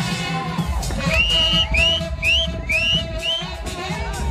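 Loud dance music with a heavy bass beat and a live saxophone playing along. In the middle comes a run of about five high, short swooping notes.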